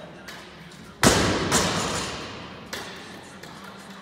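Loaded barbell with bumper plates dropped onto the rubber gym floor: a loud thud about a second in, a second hit as it bounces half a second later, a ringing decay in the hall, and a lighter knock near the end.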